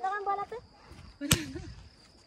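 A shouted word trails off, then about a second later comes a single sharp crack, typical of a paintball marker shot.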